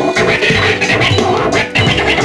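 Turntablist scratching a vinyl record on a turntable over a drum beat, the scratches coming in quick cuts with a hand on the mixer fader.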